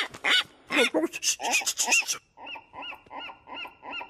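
Rapid laugh-like squawking cries, a few a second, from a cartoon seagull and Mr Bean. They are loud for about two seconds, then go on quieter and muffled, as if heard through the ceiling from the room below.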